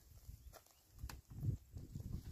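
Faint low bumps and knocks of a small motorcycle being pushed by hand over a rough dirt track, with its engine off, and two sharp clicks about half a second and a second in.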